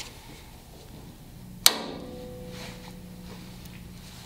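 One sharp metallic clank with a short ring, about one and a half seconds in, from Vise-Grip locking pliers clamped on a stuck screw in an Early Ford Bronco's steel door as the screw is forced to turn.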